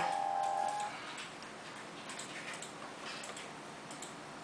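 Music from the tablet's small built-in speaker trails off within the first second, leaving faint, irregular light clicks and ticks over low room noise.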